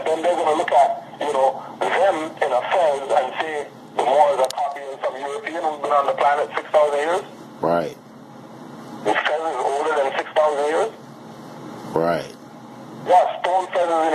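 A person talking in phrases with short pauses, the voice thin and narrow-band like speech over a radio or phone line.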